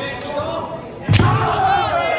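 Kendo fencers shouting kiai, with rising and falling drawn-out cries. About a second in comes a sudden loud thud of a strike landing, followed by a long shout.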